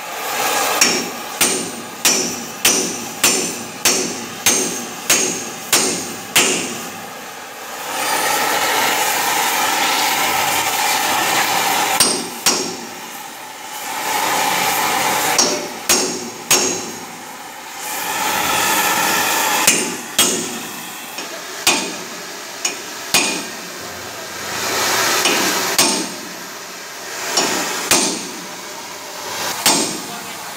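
Hammer blows ringing on steel: a steady run of strikes at about two a second, then scattered blows, as a seized bearing cone is driven off a truck axle spindle. Between blows there is a steady rushing hiss from the gas torch heating the hub.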